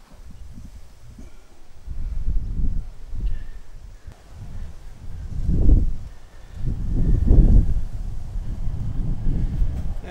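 Wind buffeting the microphone: a low rumble that comes in gusts, strongest a little past the middle and again a second or so later.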